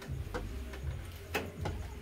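A spoon clicking against metal pans and a plate as food is dished out, a few sharp separate clicks over a low rumble.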